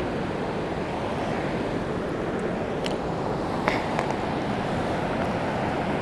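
Fast-flowing river current rushing steadily, with a couple of faint clicks about three and four seconds in.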